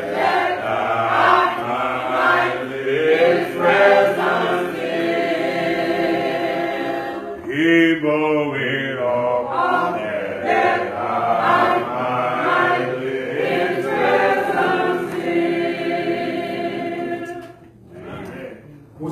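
Church congregation singing a hymn a cappella, voices only with no instruments. There is a short break between lines about seven seconds in, and the singing stops just before the end.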